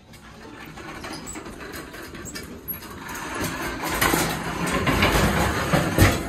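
Wheels of a pushed shopping cart rolling over a tile floor, a rumble that grows louder toward the end as the cart crosses into the elevator car.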